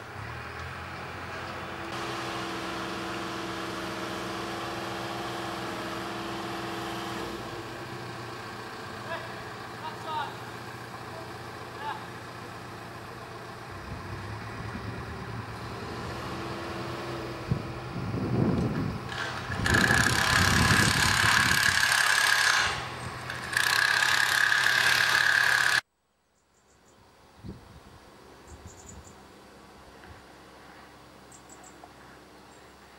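Engines running: a steady engine hum, then louder, rougher machinery noise with a high steady whine that cuts off suddenly near the end, leaving faint outdoor quiet.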